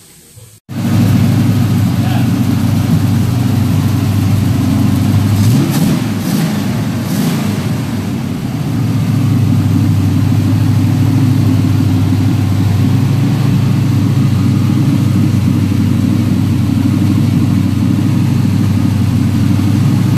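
1968 Camaro's V8 engine running steadily at idle, coming in suddenly about a second in, with a slight dip in level in the middle.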